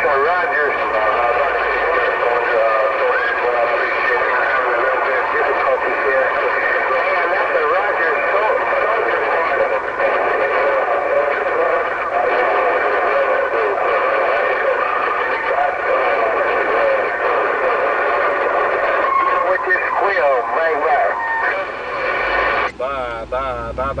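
Uniden HR2510 10-meter radio's speaker carrying a steady jumble of overlapping, hard-to-make-out voices from distant stations, thin and telephone-like in tone. Near the end one clearer voice comes through.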